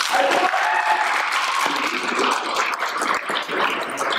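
Audience applauding: many hands clapping together in a dense, steady patter.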